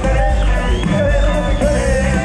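Norteño dance music from a live band, loud and steady, with a voice singing over it.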